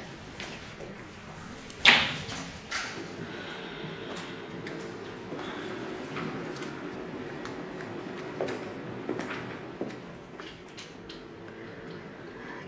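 A single sharp knock about two seconds in, then low room tone with a few faint clicks.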